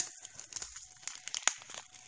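A small plastic glitter bag crinkling as it is handled, with scattered light crackles and one sharper click about one and a half seconds in.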